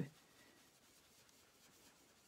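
Near silence, with a faint soft rubbing of a dry baby wipe over paper and a stencil as ink is blended on.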